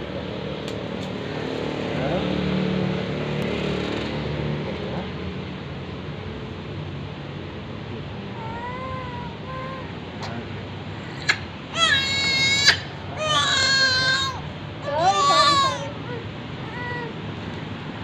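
Young infant crying during a nasal swab: a few faint whimpers about halfway in, then three loud, high-pitched wails in quick succession, the middle one longest.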